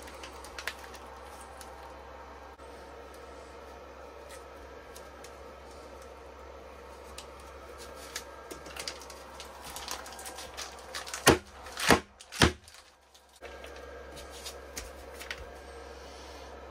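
Plastic ice pack crinkling and rustling as gloved hands press it around temperature sensors, with scattered light clicks and a few louder crackles about eleven to twelve seconds in, over a steady low hum.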